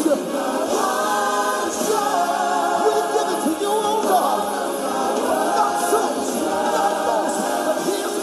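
Gospel choir singing, many voices together in one continuous song.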